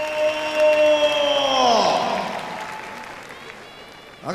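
A ring announcer's drawn-out call of a wrestler's name, the last syllable held at one pitch and then sliding down about two seconds in, over crowd applause. The whole sound then dies away.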